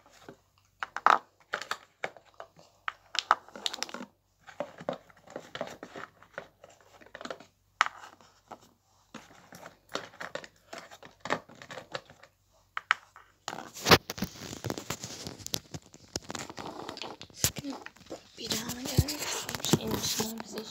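Small objects being taken out and handled: irregular clicks and knocks, then a continuous crinkling rustle of packaging over the last six seconds or so.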